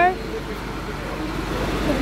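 Steady road-traffic noise from a passing vehicle, swelling with a deeper rumble near the end.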